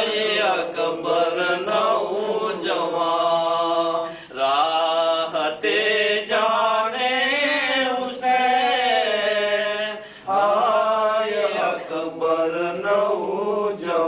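A man chanting a Muharram lament without accompaniment, in long, wavering melodic phrases with short breaths between them.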